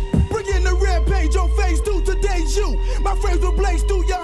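1990s boom-bap hip hop track with a heavy bass line and rapping over it, played from a vinyl 12-inch single.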